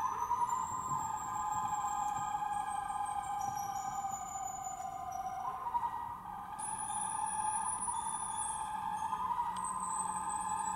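Sustained whistling tones from an invented acoustic instrument played with live electronics. The main tone sinks slowly over the first five seconds and then jumps back up, while thin, high tones shift in steps above it.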